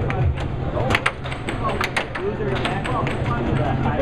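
Air hockey puck clacking off mallets and the table rails in a fast rally, with irregular sharp hits several times a second. Under them runs the steady low hum of the air table's blower.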